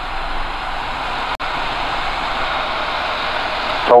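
Steady in-flight cockpit noise of a Van's RV-6A light aircraft: engine and airflow as one even rushing drone, with a brief dropout about a second and a half in.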